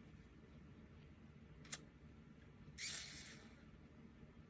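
Near silence with one soft click a little under two seconds in, then a brief soft rasp of embroidery thread and fingers on linen fabric near the end.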